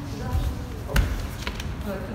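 Bare feet thudding and stepping on a wooden floor as two people move in a sparring drill, with one heavy thud about a second in.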